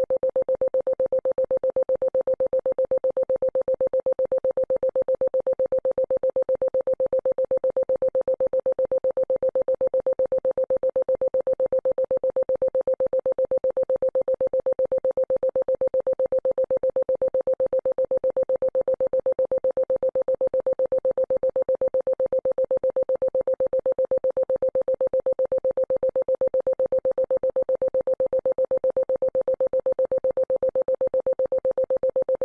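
Synthesized healing-frequency tone: a single steady mid-pitched tone, pulsing rapidly and evenly in loudness.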